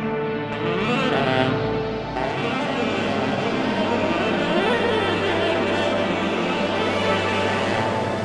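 Music: a steady low bass note under pitched lines that slide up and down.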